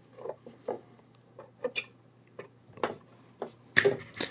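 Small, faint clicks and ticks of a soldering iron and solder wire being worked on a circuit board, scattered irregularly. Near the end comes a louder, sharp knock as the iron is set back into its metal stand.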